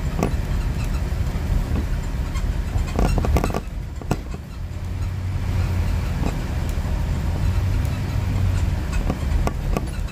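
Moving road vehicle heard from inside: a steady low engine and road rumble, with scattered clicks and knocks of rattling and a quick cluster of them about three seconds in.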